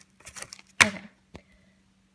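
Hands handling plastic-wrapped stationery in a box: a faint rustle, a sharp tap just under a second in, then a small click.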